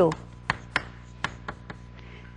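Chalk writing on a blackboard: a series of about six sharp taps and short strokes as characters are written.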